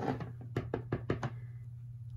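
Quick light knocks and taps, about six in little more than a second, as stamping supplies are handled and set down on a tabletop.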